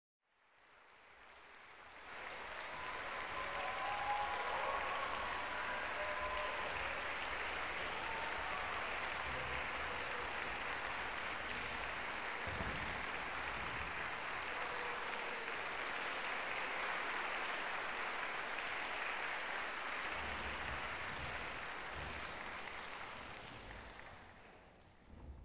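Audience applauding, fading in over the first two seconds, holding steady, then dying away near the end.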